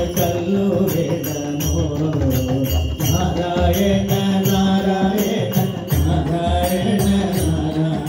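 Live Hindu devotional bhajan: singing with drum accompaniment and small hand cymbals striking a steady beat.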